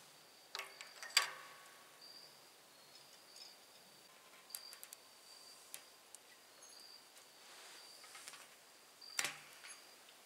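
A few faint clicks and small scrapes of a hand tool and fingers prying an old gasket out of a propane tank's valve fitting, the sharpest click about a second in and another near the end. A faint high insect trill comes and goes throughout.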